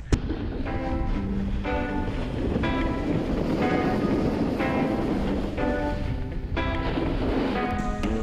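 Background music with chords changing about once a second, over a steady low rush of wind noise on the microphone.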